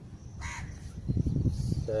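A crow caws once, faintly, about half a second in. A low, rough rumbling noise follows and is louder than the caw.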